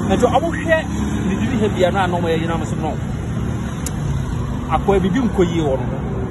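A man talking over a steady background rumble of road traffic.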